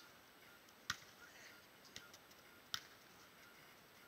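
Beach volleyball being struck by players' hands and arms: three short, sharp hits spread across a couple of seconds, the first and last the loudest.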